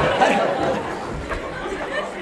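Indistinct chatter of several voices in a large hall, growing quieter toward the end.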